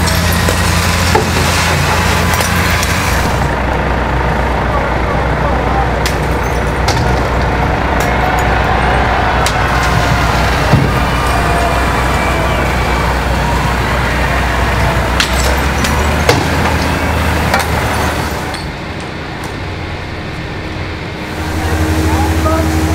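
Police water cannon trucks running, with a steady low engine drone and the rush of their water jets, under indistinct shouting. Several sharp impacts ring out, and the noise drops for a few seconds near the end.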